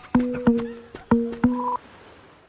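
Electronic logo sting: two pairs of sharp knocks, each with a short low pitched tone, then a brief higher tone, fading out.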